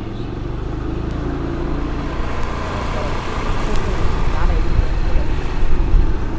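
Wind rumbling on the microphone together with the engine and road noise of a moving motorised two-wheeler, steadily growing louder.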